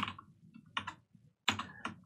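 Computer keyboard being typed on: a handful of separate keystrokes with short pauses between them.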